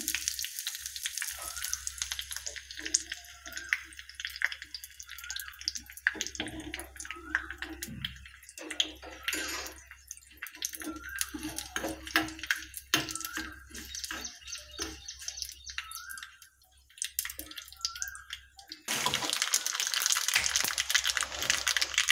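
Curry leaves and a dried red chilli frying in hot oil in a small iron tempering pan: steady sizzling with many small crackles and pops. It grows much louder and denser near the end.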